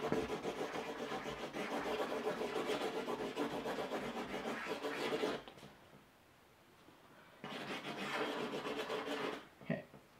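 Blue felt-tip marker scribbling in rapid back-and-forth strokes on a paper chart. It stops about five and a half seconds in and starts again for about two seconds near the end.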